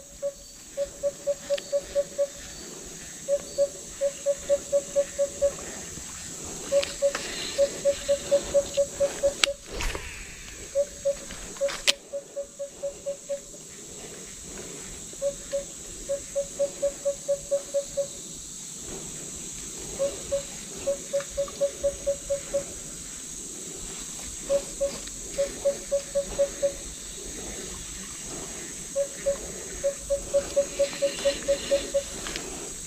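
An animal calling in repeated bouts: a clear, mid-pitched note pulsed about five times a second for a second or two, then a pause, over and over, above a steady high insect hum. Two sharp clicks sound near the middle.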